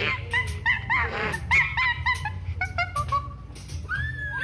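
Short, high yelping animal-like calls repeating several times a second, over a low steady bass.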